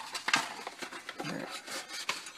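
Cardboard box being handled, rubbing and scraping in the hand, with a few light knocks.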